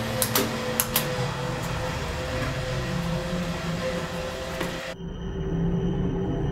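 Steady whirring of a BC-3300 gas coffee roaster running, its blower air and drum making an even noise with a constant hum, and a few sharp clicks in the first second. About five seconds in the machine sound cuts off suddenly and quiet background music takes over.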